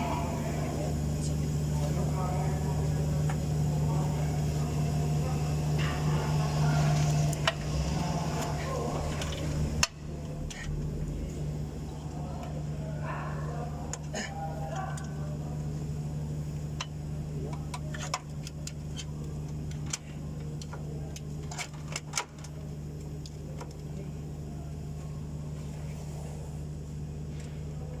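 A steady low hum that drops in level after a sharp click about ten seconds in, under indistinct voices, with a few sharp metal clicks as a drive belt is worked onto engine pulleys by hand.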